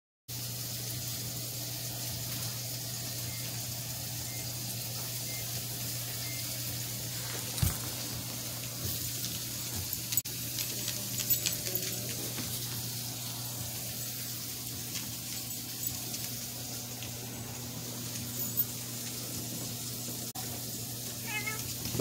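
Steady low hum and hiss of room noise, with a few light taps and scuffles from a miniature pinscher puppy and a cat tussling on a hard floor.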